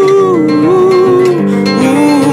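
Acoustic guitar played live, with a man singing over it in long held notes that slide from one pitch to the next.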